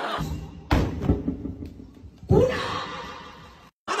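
Short music sting added in editing after a punchline, with heavy drum hits about a second in and a second loud hit with a falling tone just past halfway. It stops abruptly shortly before the end.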